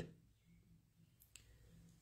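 Near silence: quiet room tone with a faint low hum and a single faint click about two-thirds of the way through.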